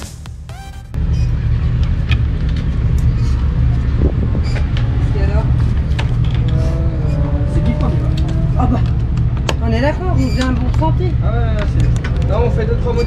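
A loud, steady low rumble begins about a second in. Indistinct voices come in from about five seconds, and a few sharp clicks of hand tools and plastic fairing panels sound as the bodywork comes off the motorcycle.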